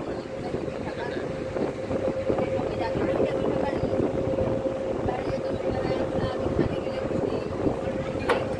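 A river ferry's engine running steadily: one constant hum over an even low rumble, with wind on the microphone.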